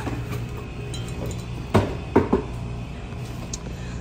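Wine bottles being handled on a store shelf: two or three sharp knocks a little under halfway through, over steady background music.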